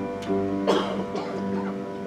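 Church worship band playing softly: held chords with electric guitar accompaniment, no singing yet.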